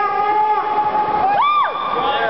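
A spectator's loud, long drawn-out shout of encouragement at a grappling match. It is held on one pitch for over a second, then swoops up and back down near the end.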